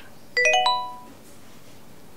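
Mobile phone message alert: a chime of four quick notes rising in pitch, ringing out within about a second, signalling an incoming message.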